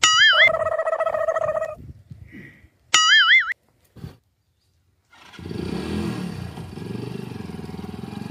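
Two short warbling whistle sound effects; the first runs into a held buzzing tone for about a second. Then, from about five seconds in, a motorcycle engine is heard running as the bike approaches.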